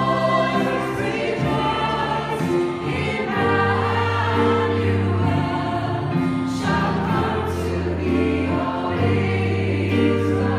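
A small mixed vocal ensemble singing a Christmas carol in harmony, holding long chords that change every second or so.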